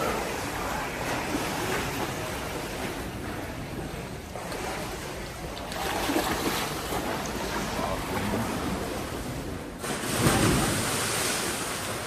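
Splashing and churning water from swimmers racing in an indoor pool, a steady rush of noise that gets louder about ten seconds in.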